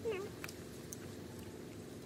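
A single short, high vocal call right at the start, falling slightly in pitch and lasting about a third of a second, like a meow, followed by two faint clicks.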